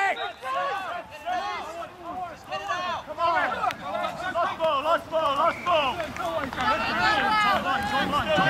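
Several men's voices shouting over one another in short, overlapping calls and yells.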